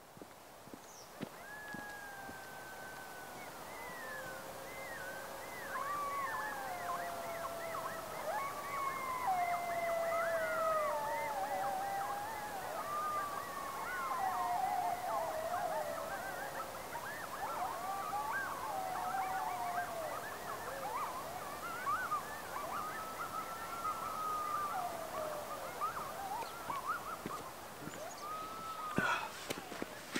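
Coyotes howling and yipping in chorus, several voices overlapping in rising and falling howls with quick yips between them. It fades in over the first few seconds.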